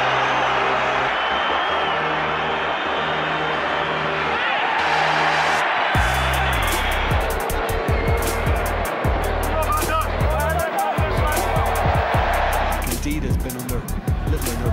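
Background music over stadium crowd noise from the match footage. A held bass line opens it, and a heavier beat with a thumping bass and fast drum ticks comes in about six seconds in.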